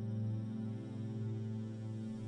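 A steady low drone with a stack of even overtones, held unchanged.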